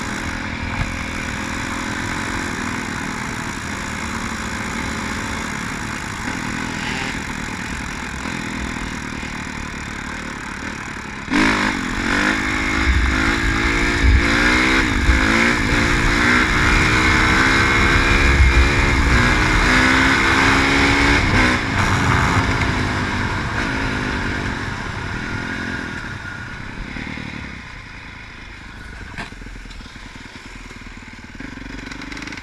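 Honda CRF four-stroke dirt bike engine, heard from on board, running steadily at first, then opened up sharply about eleven seconds in and pulling up through the gears in repeated rising steps of pitch for about ten seconds. It then eases off and gets quieter toward the end.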